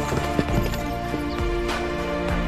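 Horses' hooves clip-clopping at a walk, irregular knocks that cluster in the first half second, over background music with long held notes.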